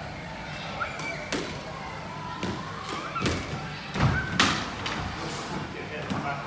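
Squash ball being struck by a racket and hitting the walls and wooden floor of a squash court: a series of about six sharp, echoing impacts, the loudest pair about four seconds in. Brief shoe squeaks on the court floor between shots.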